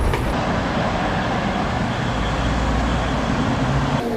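Steady road traffic noise from cars and buses on a road, with a deeper low rumble through the middle as a heavier vehicle passes.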